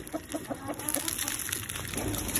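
Grain and seed mix poured from a bowl into a plastic feeder tub, the grains rattling in. A chicken clucks several times in quick succession during the first second.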